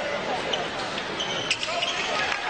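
Basketball arena crowd noise during a free throw, with a single sharp knock of the ball about a second and a half in and short high sneaker squeaks on the hardwood floor as players go for the rebound.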